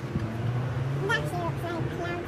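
Steady low hum of road traffic, with brief faint, high-pitched child's voice sounds.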